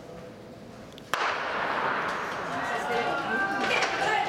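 Starter's pistol fired for a 110 m hurdles start, one sharp crack about a second in, followed at once by spectators cheering and shouting as the race begins.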